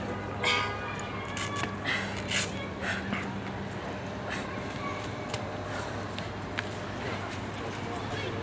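Distant voices with a few short, loud calls in the first few seconds, over a steady low background hum.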